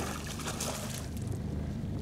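Water splashing at the start, then lighter sloshing, as a hooked pike is brought alongside the boat and reached for by hand, over the steady low hum of an idling boat motor.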